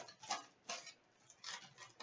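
Foil trading-card pack wrapper crinkling as it is handled and torn open: a few faint, short crackles with quiet gaps between.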